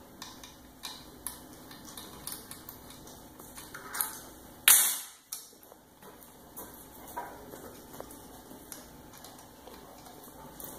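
Light metallic clicks and clinks from hands working on a Holset VGT turbo's electronic actuator on a bench, with one loud, sharp noise about halfway through that fades within half a second.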